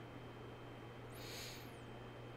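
A single soft breath through the nose, a short hiss lasting under a second about a second in, over a steady low hum.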